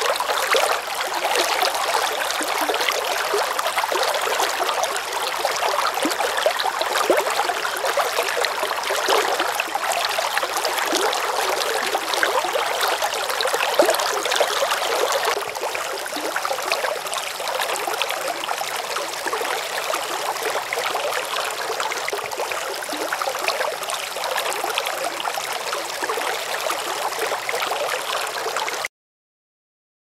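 Running water of a small rocky stream: a steady rushing and gurgling that eases a little about halfway and cuts off abruptly near the end.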